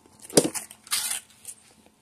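A dog crunching a cheese-ball snack: a few short, sharp crunches in the first second and a half.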